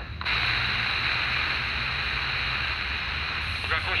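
Static hiss from the speaker of a HanRongDa HRD-737 receiver tuned to 27 MHz CB: a steady rush of radio noise between transmissions. It starts about a quarter second in after a brief quiet gap, and a voice breaks through near the end.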